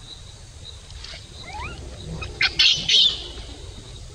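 Birds chirping, with a few short rising chirps and then a cluster of loud, high-pitched calls about two and a half to three seconds in.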